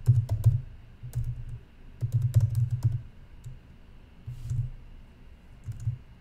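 Typing on a computer keyboard: about five short bursts of keystrokes with brief pauses between them.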